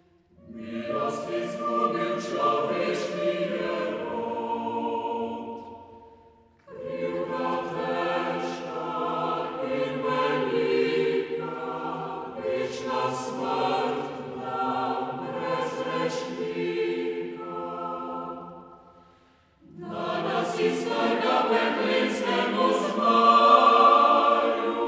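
Chamber choir singing an old Slovene Christmas hymn in long phrases. The sound dies away briefly between phrases at about six and a half seconds and again at about nineteen and a half seconds, and the last phrase is the loudest.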